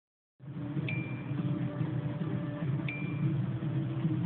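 Two short phone text-message notification chimes, about two seconds apart, each a brief bright ping that rings off quickly, over steady background music.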